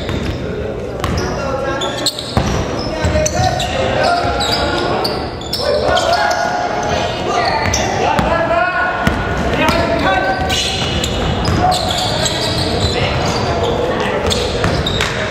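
Basketball dribbled on a hardwood gym floor, its bounces mixed with players' shouts and calls, all echoing in a large hall.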